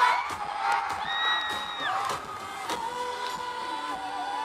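Stadium concert crowd cheering and whooping as a long held sung note cuts off at the start, with the band's music carrying on more quietly underneath.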